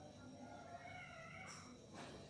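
Near silence, with a faint drawn-out call in the background that wavers in pitch for about a second and a half.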